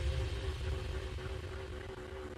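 Low steady rumble with a faint steady hum, fading slightly.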